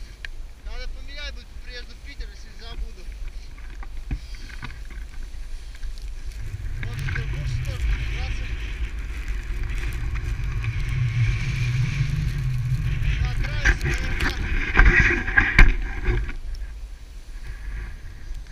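Skis running over snow with wind rushing across the pole-mounted camera's microphone. It swells through the middle with a deep buffeting rumble and cuts off suddenly near the end. A voice is heard briefly at the start.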